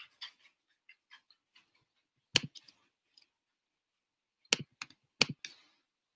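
Scattered keyboard clicks in short irregular bursts, with a few louder knocks, about a second and a half in and three more close together near the end.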